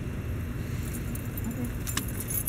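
A bunch of keys jangling in hand, light metallic clinks and jingles about a second in with a sharper click near the end, over a steady low hum.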